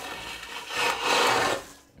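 Parchment paper carrying the dough slid across a wooden board: a dry scraping rub for about a second that fades out just before the end.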